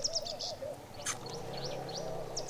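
Birds calling: a quick run of high chirps at the start, a lower wavering call underneath in the first half, and a few faint chirps later on.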